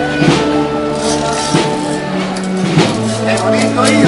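Processional band playing a slow march: held wind chords with a drum stroke about every second and a quarter, the harmony shifting about halfway through.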